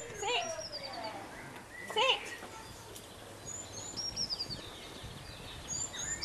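A small songbird singing a short phrase of high chirps that step downward, repeated three times. A single brief voice-like sound comes about two seconds in.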